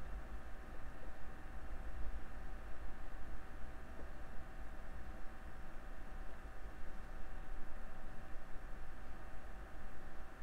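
Quiet room tone: a steady low hum with a thin steady tone above it, and a single faint click about four seconds in.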